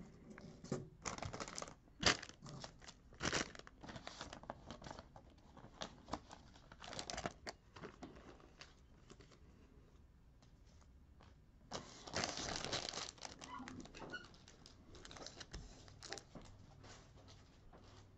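Off-camera rustling and crinkling in short bursts, like plastic packaging or paper being handled, with a few sharp clicks; the longest and loudest stretch comes about twelve seconds in.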